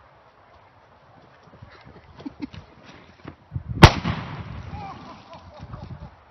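A firework exploding under a pumpkin with one sharp, loud bang about four seconds in, blowing the pumpkin apart, followed by a fading rumble.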